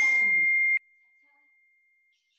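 A bell-like ding ringing out on one steady high tone, then cut off abruptly under a second in.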